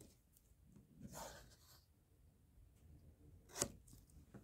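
Faint rustling and sliding of paper on a cutting mat as a paper strip is handled, with one sharp click a little after three and a half seconds.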